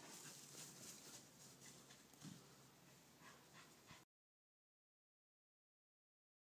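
Near silence: a faint dog sound from a corgi, with one short low noise about two seconds in, then the sound cuts off completely at about four seconds.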